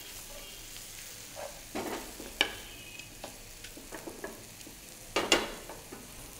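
Mushrooms, chopped onion and garlic sizzling in oil in a frying pan, with a spatula scraping and knocking against the pan as they are stirred. The loudest scrapes come about two seconds in and again about five seconds in.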